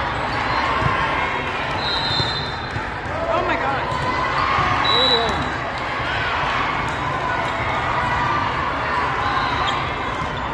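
Echoing din of a busy indoor volleyball hall: many voices and shouts over the thuds of balls being hit and bounced. Two brief high-pitched squeaks come about two and five seconds in.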